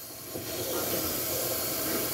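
Water hissing through a toilet supply line and fill valve as the shutoff valve is slowly opened and the tank starts to refill. The hiss swells over the first half second, then runs on steadily.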